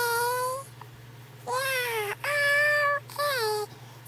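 A high-pitched voice holding long, wordless, drawn-out notes, four in all, each sliding a little up or down in pitch, over a steady low hum.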